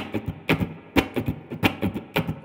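Les Paul-style electric guitar strummed in a swung, funky rhythm in C, a few sharp percussive chord strokes a second at uneven spacing, each ringing briefly. The simple chord shapes get their swing from the right hand.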